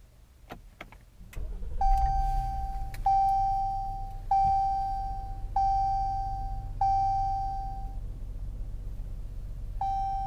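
Dashboard warning chime in a 2018 Jeep Cherokee: five single dings, each one a mid-pitched tone that fades, about a second and a quarter apart, then one more ding near the end. Under the chimes is the low, steady hum of the 3.2-litre V6, which starts about one and a half seconds in and then idles.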